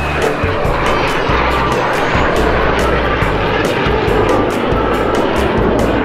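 Aircraft flying past: a loud, steady rush of engine noise over background music, cutting off abruptly near the end.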